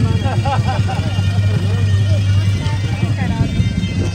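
Several people talking and greeting one another over background music with a steady low drone.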